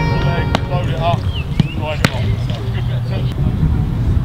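Open-air football training ground: a steady low rumble with distant voices, and a few sharp thuds of footballs being struck, the loudest about half a second and two seconds in.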